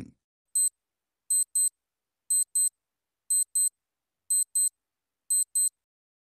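Countdown-timer clock sound effect: short, high-pitched electronic ticks, first a single tick, then a quick pair of ticks once a second, five times.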